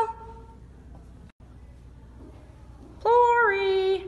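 Low room hum for about three seconds, broken by a brief dropout. Then, about three seconds in, a high, sing-song voice calls out one drawn-out, slightly wavering note that lasts about a second.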